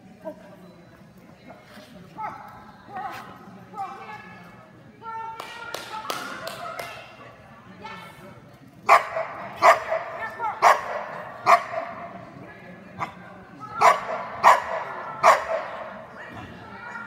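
A dog barking: quieter, higher calls in the first half, then a run of loud, sharp barks at a steady pace about halfway through and three more near the end.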